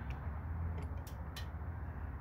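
A few light clicks of channel-lock pliers' jaws against the plastic cap of an Airmatic air strut's electronic damping valve as they are fitted into its notches, over a low steady hum.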